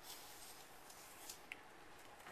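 Near silence with faint light rustling and one small tick about three-quarters of the way through, from small plastic cups being handled while salt is poured.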